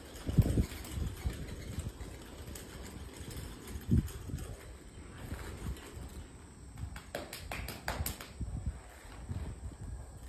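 A horse stepping on sand arena footing: a few scattered dull thuds, with a cluster of sharp clicks about seven to eight seconds in.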